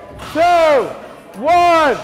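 A man shouting a countdown: two loud, drawn-out numbers about a second apart.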